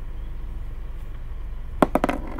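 Two sharp knocks in quick succession near the end, over a steady low hum.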